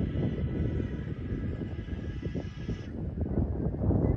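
Wind buffeting the microphone: an irregular low rumble that rises and falls. A faint steady high whine runs under it and stops abruptly about three quarters of the way through.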